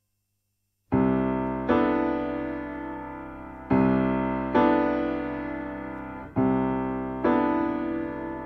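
Piano chords struck slowly, six in all in pairs, each left to ring and fade, starting about a second in after silence.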